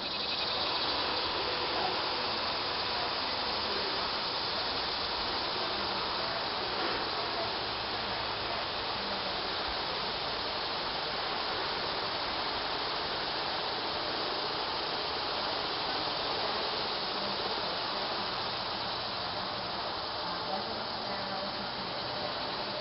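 Steady insect chorus, an even unbroken hiss with no pauses.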